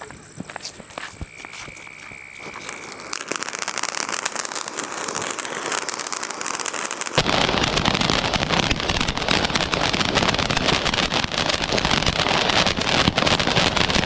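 'Corona' box fountain firework sputtering as its fuse catches, then spraying sparks with a hiss from about three seconds in. About seven seconds in the spray turns louder and fuller, with dense crackling from the crackling stars.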